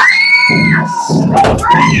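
A person's high-pitched scream, rising at the start and held for under a second, followed by a shorter cry near the end.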